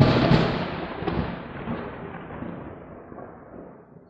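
A sound effect for an end-logo sting: a sudden boom that dies away over about four seconds in a long, thunder-like rumble, the hiss fading from the top down.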